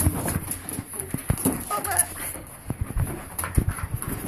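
Puppies giving a few short whines about a second and a half in, amid repeated knocks and rustling close to the microphone.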